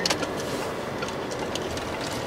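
Steady road and engine noise heard inside a moving car.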